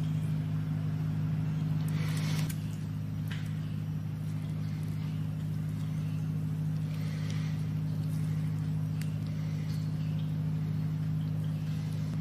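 A steady low machine hum that drops slightly about two and a half seconds in, with a few faint rustles over it.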